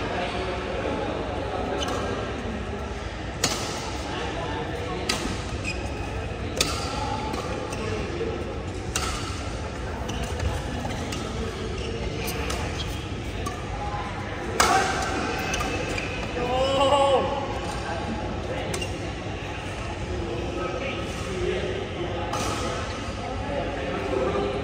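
Badminton rackets striking a shuttlecock during a doubles rally: sharp, short smacks every one to three seconds, each with a brief echo in the hall, over background chatter.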